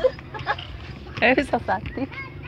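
Voices in the open air, with a short loud call about a second and a quarter in.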